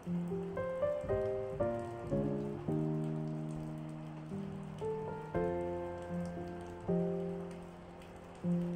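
Calm solo piano music, notes and chords struck softly and left to fade, over a steady sound of rain.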